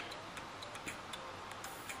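Quiet room tone with faint, scattered ticks.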